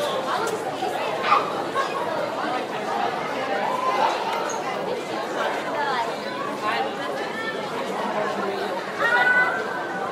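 School classroom ambience: many students chattering at once, a steady babble of overlapping voices with no single clear conversation. One voice stands out briefly near the end.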